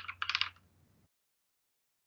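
Computer keyboard being typed on: a quick run of key clicks for about half a second, then it stops.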